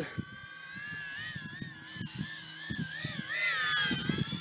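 GEPRC HX2 110 mm brushless micro quadcopter's motors and props whining in flight, the pitch wavering up and down with throttle changes and climbing briefly near the end.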